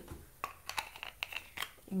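Plastic squeeze tube of Ultra Shea body cream being handled and squeezed out into the hands: a scatter of small sharp clicks with soft crinkling.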